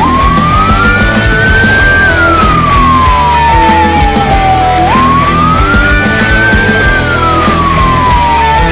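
A siren wailing over loud rock backing music. Its single tone sweeps up for about two seconds and then slowly falls back, and the cycle starts again about five seconds in.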